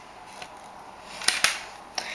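Handling noise of objects being moved about: soft rustling with two quick sharp clicks about a second and a quarter in.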